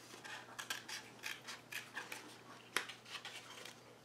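Small scissors snipping through green cardstock in a faint run of quick, irregular cuts, with one sharper snip about three quarters of the way through.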